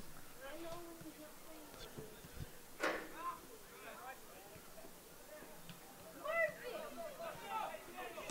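Soccer players shouting and calling to each other on the field, faint and distant, with one sharp knock about three seconds in.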